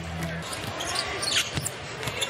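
Basketball bouncing on a hardwood arena court, with a brief high squeak and a couple of sharp knocks about a second and a half in.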